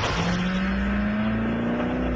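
Koenigsegg CCR's supercharged V8 accelerating hard, its engine note climbing steadily in pitch as the car pulls away, over a steady rush of noise.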